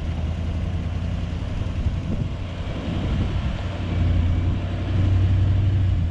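A large V8 SUV engine, a Nissan Patrol, running while the vehicle sits stuck sideways in soft sand. The low hum is steady and gets louder about four seconds in.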